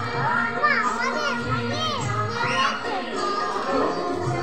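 Several children's voices calling out in short rising-and-falling cries, over background music that keeps playing underneath.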